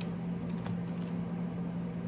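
A few light clicks and taps of tarot cards being handled on a wooden tabletop, over a steady low hum.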